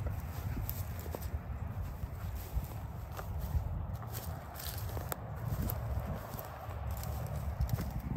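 Footsteps on dry cut grass and brush, with scattered light clicks and rustles over a steady low rumble.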